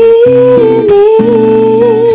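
A female voice holds one long sung note with a slight waver over strummed guitar chords in a pop ballad.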